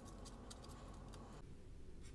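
Faint, irregular snips of small scissors cutting sublimation paper close around an earring blank.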